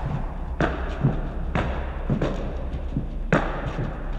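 Jump-rope sounds: five sharp taps on a hard floor, mostly about half a second apart, over a low steady hum.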